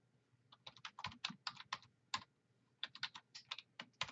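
Typing on a computer keyboard: two runs of quick keystrokes with a short pause between them.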